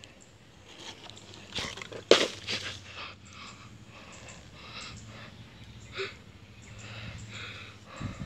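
Irregular rustling of dry palm fronds and leaf litter mixed with close handling noise, with one sharp knock about two seconds in.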